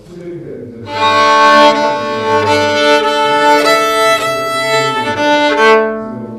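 Fiddle retuned from standard E-A-D-G to E-A-D-A for the key of D, its low G string raised to A. It is bowed, holding several notes at once as chords, from about a second in until just before the end.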